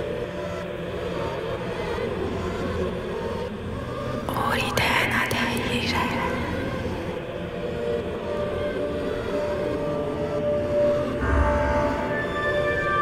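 Horror soundscape: overlapping whispered voices over a low, steady drone, with a louder breathy swell of whispering about four seconds in. Sustained tones come in near the end.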